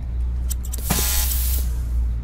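Cartoon makeover sound effect: a few light clicks, then a short burst of hiss about a second in, over a steady low drone.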